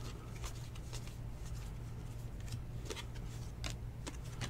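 2019 Diamond Kings baseball cards being handled, slid and flipped through a stack by hand, giving light, irregular snaps and ticks as each card moves. A steady low hum runs underneath.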